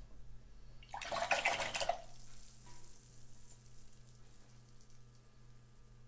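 A paintbrush swished in a jar of rinse water: one splashy burst lasting about a second, near the start.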